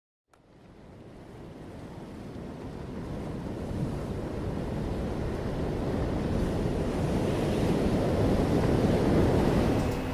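Ocean surf: a steady wash of waves fading in from silence and growing louder throughout.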